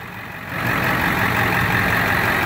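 A 1999 Ford F-250's 7.3 L Power Stroke V8 turbodiesel idling steadily. It gets louder about half a second in.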